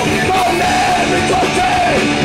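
Punk rock band playing live, with electric guitars, bass and drums and a shouted vocal that holds a long, wavering note over the band.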